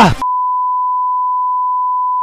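A steady electronic beep tone: one pure, unchanging pitch that cuts in abruptly just after the start and holds at a constant level.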